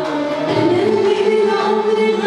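A woman singing Arabic tarab live with an orchestra behind her, her voice holding long, wavering notes over the strings.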